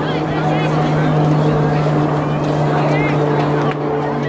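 A steady, low mechanical hum, like a motor or engine running, with distant voices calling out over it.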